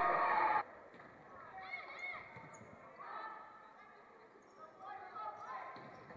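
Faint gymnasium room sound with distant voices of volleyball players calling out briefly, twice. A steady hiss cuts off abruptly about half a second in.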